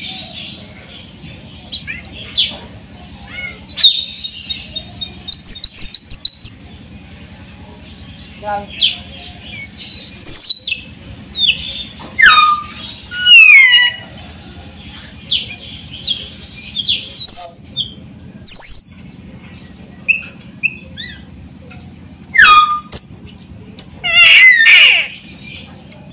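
Caged raja perling (Sulawesi white-necked myna) calling in loud, separate phrases: a quick run of repeated notes, several sharp whistles sliding downward, and a burst of harsh chatter near the end. A steady low hum runs underneath.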